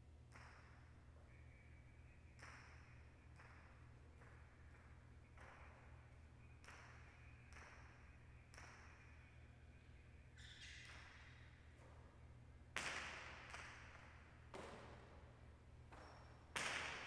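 Jai alai pelota knocking against the court's walls and floor: a string of sharp knocks, each with a short echo, the loudest two a little past three-quarters of the way through.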